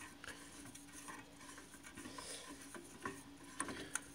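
Faint metal rubbing and small clicks as a Honeywell steam pressure control is handled and turned on its threaded brass fitting, with a few sharper clicks near the end.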